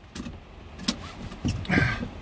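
Van seat belt pulled out of its retractor and drawn across the body: a few sharp clicks, then a short rasp of webbing sliding near the end.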